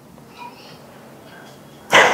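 A pause in a woman's talk: quiet room hiss, then a quick, sharp breath just before the end as she starts speaking again.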